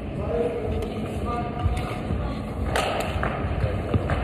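Room noise of a large indoor climbing gym: a steady low rumble with faint distant voices, and one short sharp clatter a little under three seconds in.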